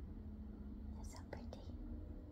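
Soft, brief whispering about a second in, a few breathy syllables over faint room hum.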